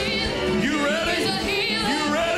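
Live worship music: a singing voice that glides and wavers in pitch over steady instrumental backing.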